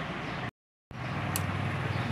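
Steady background noise with a low hum, cut to dead silence for a split second about half a second in. A single faint tick comes a little past the middle.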